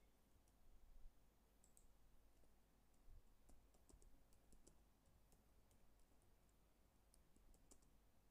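Faint, irregular clicking of computer keyboard keys being typed on, with a couple of soft low thumps about one and three seconds in.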